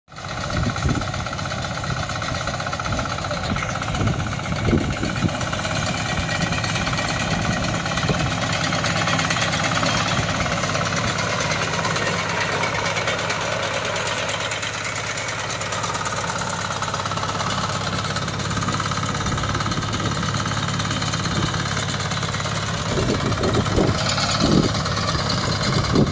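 Walk-behind reaper's engine running steadily while the machine's cutter bar mows a black gram crop.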